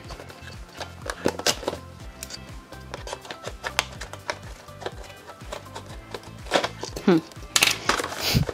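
A cardboard craft-kit box being opened, first snipped at with scissors and then pried and pulled open by hand: a scatter of short sharp clicks and cardboard crinkles over soft background music.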